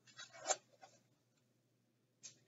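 A faint, brief paper rustle about half a second in as a page of a hardcover picture book is turned.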